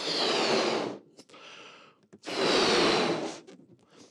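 A man blowing two hard breaths into a blue rubber balloon, inflating it. Each breath is a loud rush of air lasting about a second: the first at the start, the second a little past two seconds in.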